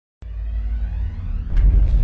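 Intro sound effect for a logo animation: a deep rumble that starts suddenly and swells into a whoosh about one and a half seconds in.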